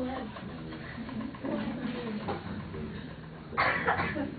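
Faint, low murmuring voices of people in the room, with a short sharp noise near the end.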